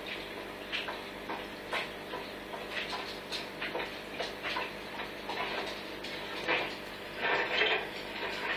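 Steady mains-type hum from aquarium equipment, with irregular faint clicks and crackles over it, a cluster of them about seven seconds in.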